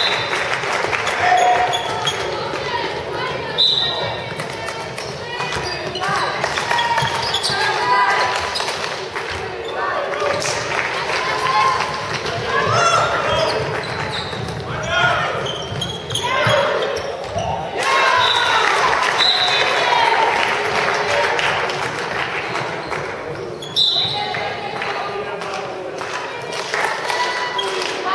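Sounds of an indoor handball match: the ball bouncing on the hall floor amid players' and spectators' shouting voices, echoing in the sports hall. A few short high-pitched squeaks cut through, near the start, about 3.5 seconds in and about 24 seconds in.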